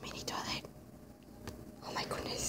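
A person whispering, in a breathy stretch for the first half-second and again just before the end.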